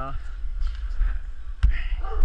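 A low rumble of movement with one sharp knock about one and a half seconds in.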